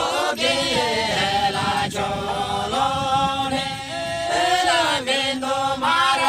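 A group of villagers singing a folk song together in unison, chant-like, with long held notes that slide up and down in pitch.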